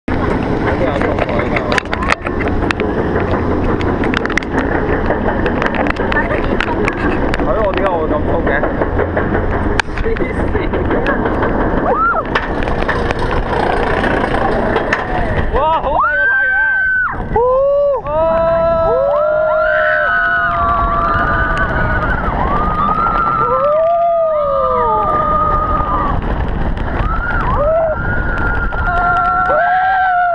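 Ride on the Hair Raiser floorless roller coaster heard from a seat in the train: a steady noisy rumble with scattered clicks for the first half, then from about halfway, as the train drops into the loops, riders screaming in long rising-and-falling cries over the rush of the ride.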